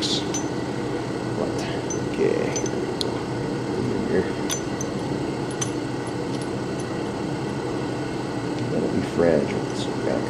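Light clicks and clinks of small brake master cylinder parts being handled and fitted by hand, a few scattered ticks over a steady background hum.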